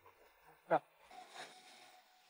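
A lull, mostly quiet, broken by one short voiced sound from a person about three-quarters of a second in, with faint traces of voice after it.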